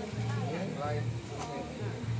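A voice speaking over background music, with low notes that start and stop beneath it.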